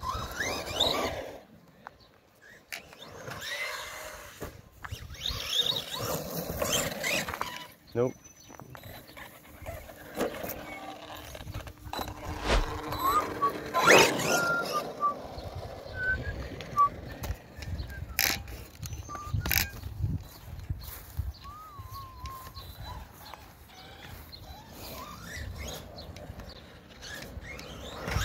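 Man whistling a tune in short phrases over the electric motor whine and tyre noise of an Arrma Big Rock RC monster truck driving on tarmac. A few sharp knocks, the loudest about halfway through.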